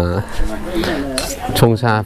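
Metal spoons and scoops clinking against small ceramic bowls and glass jars as dried tea herbs are scooped out, with a few clinks about a second in.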